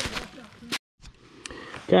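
Footsteps crunching through dry leaf litter as short, sharp crackles, which cut off suddenly to silence just under a second in. Faint rustling follows.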